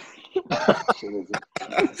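Men's voices over a video call, in short broken bursts with coughing.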